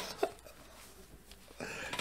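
The tail of a laugh, a single short burst just after the start, then a lull of near silence before faint room sound returns near the end.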